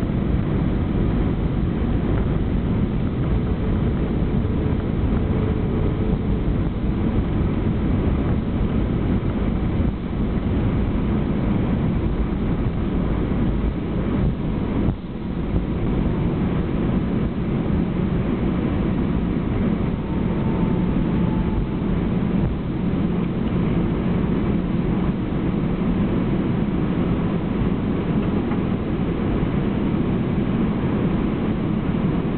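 Steady, loud rumble in the cabin of an Airbus A321 rolling along the runway just after touchdown: engine and rolling noise heard from a window seat over the wing. There is a brief dip about halfway through.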